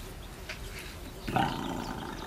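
A short, raspy, cat-like growl starting about a second and a half in and lasting about half a second.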